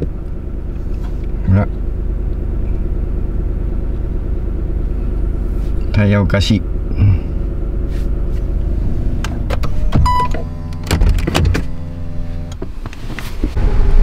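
Steady low hum of a Lexus GX460's V8 engine and drivetrain inside the car's cabin, running at around 1,000 rpm.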